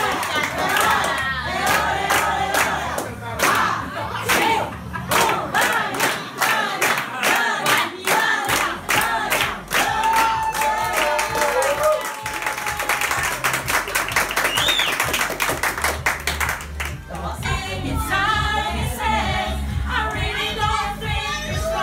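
A room full of party guests singing a birthday song together to rhythmic hand-clapping, ending on a long held note about halfway through. Cheering and applause follow as the candles are blown out, and other singing starts near the end.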